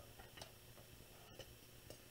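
Near silence: room tone with a couple of faint ticks.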